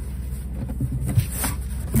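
Cardboard shoebox lid being lifted open, with a brief scrape of cardboard about a second and a half in, over a steady low hum.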